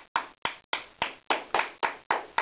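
Hand clapping, a steady run of sharp separate claps at about four to five a second, greeting the newly announced player.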